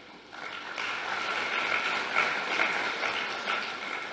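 Audience clapping, beginning about a third of a second in and building a little louder within the first second.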